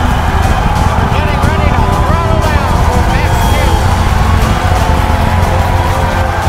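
Music mixed with spectators cheering and shouting over the deep, steady rumble of the Falcon Heavy rocket launch.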